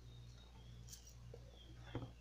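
Near silence: room tone with a low steady hum and a faint click about a second in.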